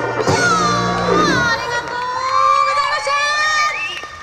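Jazz big band's final held chord cutting off about a second and a half in, followed by audience cheering and whooping.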